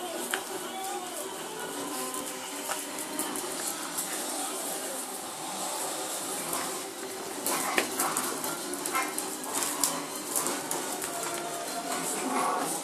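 Low background music with an indistinct voice, under scattered light clicks and rustles from small dogs moving over a tiled floor and torn wrapping paper.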